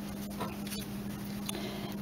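Quiet room with a steady low hum and a few faint, light clicks as a metal canning lid is handled and set on the rim of a glass Mason jar.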